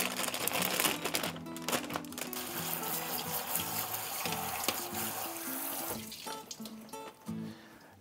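Water spraying from a pull-down kitchen faucet onto peppers in a colander over a stainless steel sink, a steady hiss that stops about six seconds in. Background music plays throughout.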